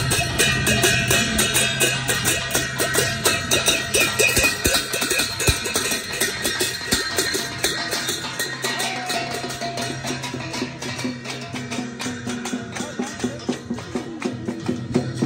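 Hand-held brass gongs beaten with sticks in a steady, fast marching rhythm, with drumbeats. The gongs' ringing tones overlap.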